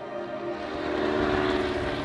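Propeller-driven light aircraft flying past, its engine drone swelling to a peak about a second and a half in and then easing off.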